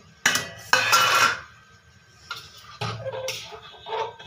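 Metal ladle clattering and scraping in a steel kadhai: two loud clatters with metallic ring about a quarter and three quarters of a second in. Lighter clinks and knocks of steel kitchenware follow in the second half.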